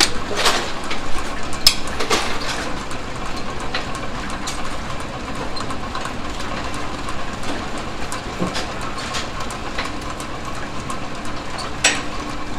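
Brunswick pinsetter, a converted Model A, running through a machine cycle: a steady mechanical run of gearbox and linkages with a cluster of sharp clicks and knocks in the first couple of seconds and scattered clicks after, as the rake rides its height cam.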